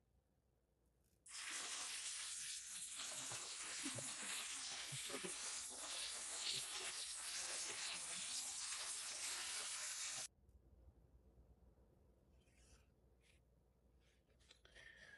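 A steady hiss that switches on about a second in and cuts off abruptly about ten seconds in, with a few faint soft knocks under it.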